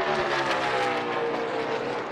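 A pack of NASCAR Cup cars passing at full racing speed, their V8 engines running flat out. The engine pitch falls steadily as the cars go by, with several engines overlapping.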